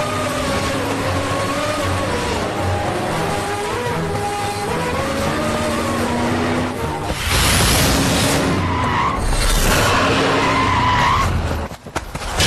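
Film background score with a melody, then from about seven seconds in, loud skidding of vehicle tyres with squeals as vehicles brake hard, over the music.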